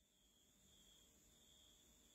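Near silence: room tone in a pause between speech.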